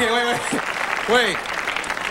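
Applause at the end of a dance routine, with a voice calling out briefly at the start and again about a second in.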